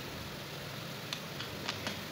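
Faint, steady sizzling of oncom and chillies frying in an aluminium wok, with a few light ticks.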